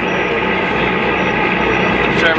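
Fishing trawler's engine running steadily, a dense, even drone heard on deck, with a few faint short high beeps over it.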